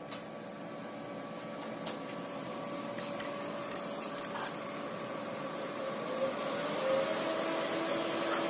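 Cooling fans of an ASIC cryptocurrency miner running with a steady whir that grows gradually louder, its pitch rising a little about six to seven seconds in. A few light clicks sound over it.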